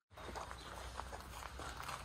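Footsteps on gravel and rubble, an uneven run of small crunches over a low steady rumble, starting suddenly just after the start.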